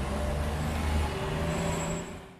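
A steady low rumble with a faint hum, like a running motor vehicle.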